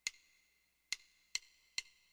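Faint percussive count-in clicks setting the 140 bpm swing tempo before the backing band starts. One click, a gap of about a second, then three quicker evenly spaced clicks.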